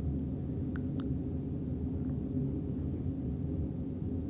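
Two light laptop key taps about a second in, over a steady low background rumble.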